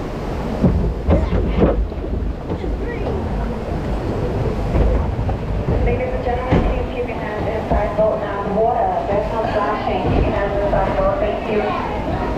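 Log flume boat rumbling along its water trough into the loading station, with a few knocks as the hull bumps the channel about a second in. Voices of people at the station come in over the second half.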